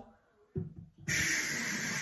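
WOWOW stainless steel glass rinser spraying from its seven jets up into an upturned baby bottle pressed down onto it: a sudden loud hiss of high-pressure water that starts about a second in, just after a short low thump.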